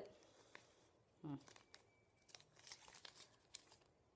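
Faint, scattered crinkling of a gashapon capsule's packaging being handled: a clear plastic bag and a small folded paper pamphlet. A short hum of a voice comes about a second in.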